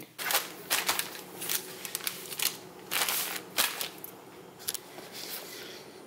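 Table knife scraping garlic butter across slices of crusty bread: a run of short, crisp scrapes, irregular and about two a second, over a faint steady hum.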